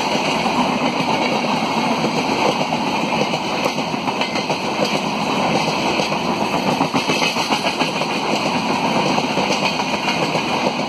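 Rajdhani Express passenger coaches rolling past close by: a loud, steady rush of wheel-on-rail noise with rapid, dense clatter.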